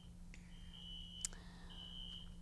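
Faint high-pitched electronic beeps, one steady tone sounding in beeps of about half a second to a second, with a single sharp click midway, over a low steady hum.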